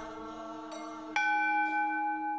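A bell is struck once about a second in and rings on, slowly fading, over a softer sustained tone.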